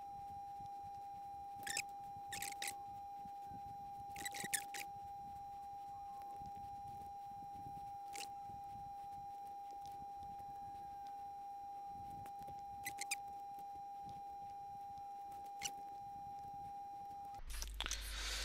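A single steady high tone, held without change and cut off suddenly just before the end, over a faint hiss. A few faint short clicks are scattered through it.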